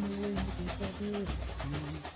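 Samba-enredo: samba percussion keeping a steady beat under a bass line and a held, sliding melody.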